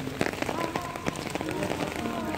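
Heavy rain falling on stone paving and puddles, a steady hiss with many close drips and splashes.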